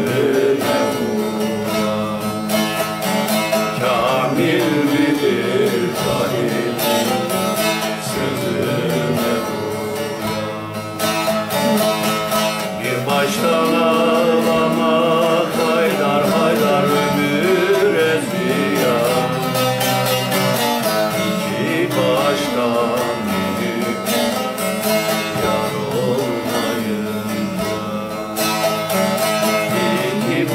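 A long-necked bağlama (saz) being plucked while a man sings an Alevi-Bektashi nefes to it. The player himself says the saz is out of tune.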